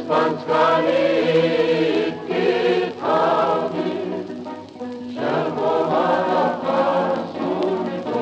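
A choir singing music in long held phrases, with short dips between phrases.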